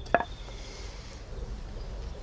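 A single sharp click about a tenth of a second in, as the whittling knife and lime-wood blank are handled, followed by quiet outdoor background with a faint, high, steady tone.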